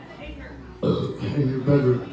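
A person's voice: a short, low spoken phrase starting a little under a second in, after a quieter moment of low room hum.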